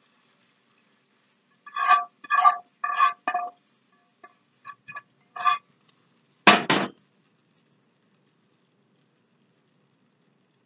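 A metal utensil scraping and knocking against a skillet, each stroke leaving a short metallic ring: four strokes about half a second apart, then a few lighter taps. This is the last of the sauce being scraped out. About six and a half seconds in, the pan is set down on the stovetop with a louder, deeper double clank, the loudest sound here.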